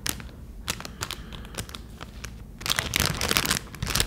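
Clear plastic packaging crinkling and clicking under long fingernails as it is handled. Scattered separate clicks and taps at first, then a denser stretch of crinkling in the last second or so.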